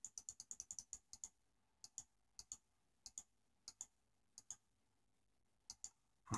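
Faint computer mouse button clicks: a quick run of about a dozen in the first second or so, then spaced clicks, often in press-and-release pairs, every half second to a second.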